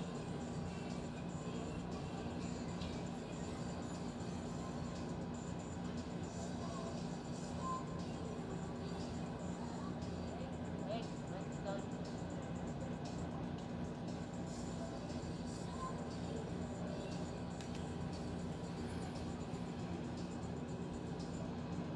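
Casino floor din around a craps table: steady background music under indistinct voices, with no clear words.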